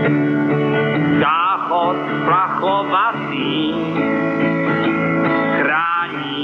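A song: strummed guitar chords with a voice singing short phrases. It sounds dull and narrow, as from an old radio tape.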